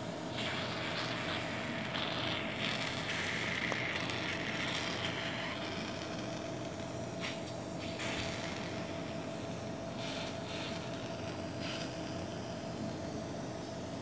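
Steady hum of running endoscopy equipment with a constant whine. Bursts of hissing come and go, the longest lasting the first five seconds or so.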